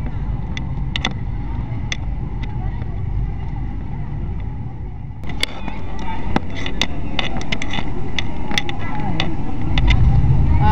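Steady low rumble of handling and walking noise on a handheld camera's microphone, with scattered sharp clicks and indistinct voices. About five seconds in the sound turns louder and brighter.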